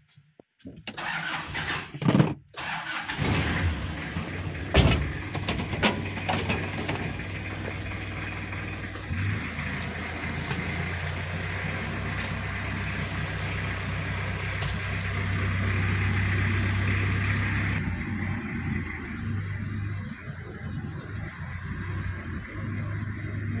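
A car engine starting and then idling steadily, a low even hum from about three seconds in. A sharp knock sounds about five seconds in, with a few lighter clicks around it.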